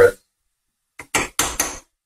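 Wooden spatula scraping and stirring chopped carrots in a stainless steel frying pan: three short scrapes in quick succession about a second in.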